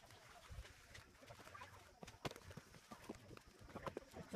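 Very faint outdoor ambience: a bird calling faintly in the distance, with a few soft knocks of footsteps on a dirt path.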